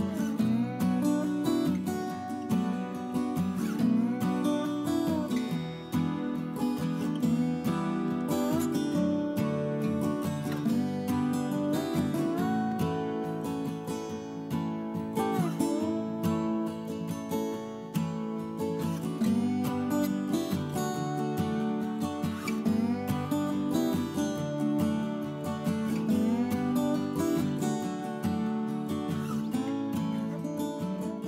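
Background music: an acoustic guitar piece with strummed and picked notes.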